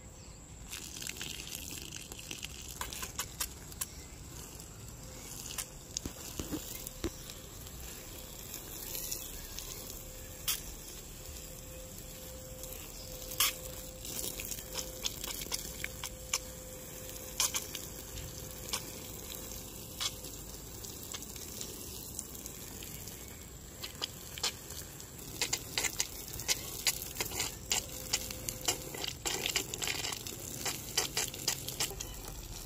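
Water from a garden hose spraying and pattering onto soil and plants, a steady hiss with scattered crackling drops that grow denser near the end.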